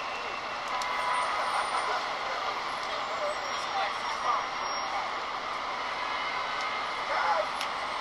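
Audio of a music video's non-music scene playing on a computer: faint voices over a steady background hiss, with no music.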